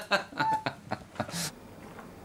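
A man laughing in quick repeated bursts that fade, cut off sharply about one and a half seconds in, leaving faint room tone.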